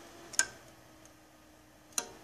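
Two sharp switch clicks about a second and a half apart, over a faint steady hum.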